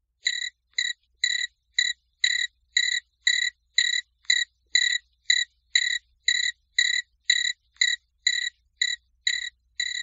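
Cricket chirping, one short chirp about every half second in a steady, even rhythm, starting abruptly out of silence.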